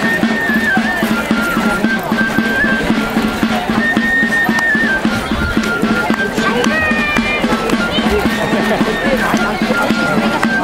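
Basque folk dance music played live: a single high melody line stepping between held notes over a steady low note, with people's voices mixed in.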